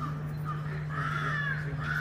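A bird calling: a couple of short calls, then two longer arched calls about a second in and near the end, over a steady low hum.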